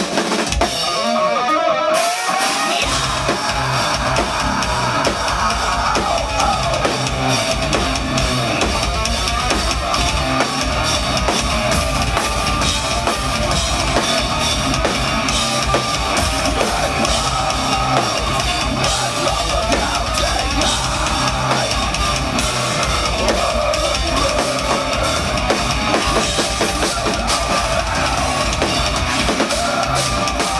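A progressive metal band playing live: a short lead-in, then the full band comes in about two to three seconds in. From there it is heavy drums with rapid bass-drum strokes under dense distorted guitars.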